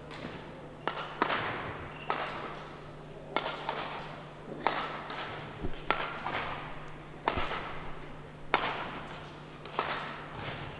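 Badminton racket strikes on a shuttlecock during a rally: a sharp crack about once a second, each echoing in a large indoor hall, over a steady low hum.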